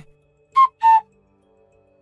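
Two-note whistle-like transition sound effect: two short tones about a third of a second apart, the second slightly lower in pitch. Faint background music follows.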